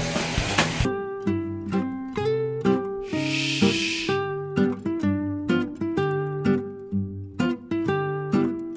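Light background music of plucked acoustic guitar or ukulele notes, starting about a second in after a steady hiss cuts off. A short hiss sounds over the music about three seconds in.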